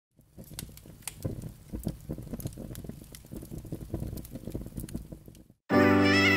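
Irregular crackles and pops over a faint low hum, an old-recording surface-noise effect. Near the end, music comes in suddenly and much louder with a held chord.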